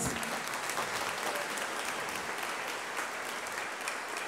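Congregation applauding: many people clapping steadily.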